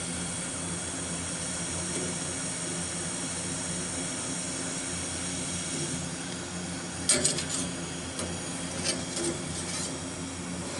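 A hand file scraped along the tops of a sawmill band-saw blade's teeth to clean off sap: a quick cluster of short metal-on-metal scraping strokes about seven seconds in, then a few lighter ones, over a steady background hum.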